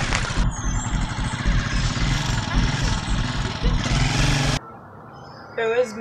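Loud outdoor street noise with a motor vehicle running close by, which cuts off suddenly about four and a half seconds in to a quiet room.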